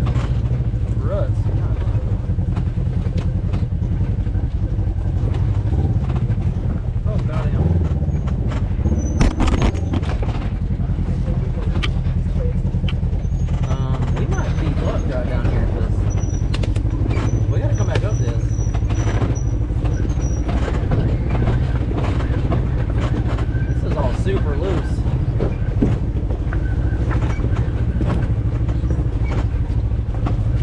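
Side-by-side UTV engine running steadily at low speed while the machine crawls over a rocky, rutted trail. Scattered knocks and clatter come from the tyres and chassis working over the rocks, the loudest of them about nine to ten seconds in.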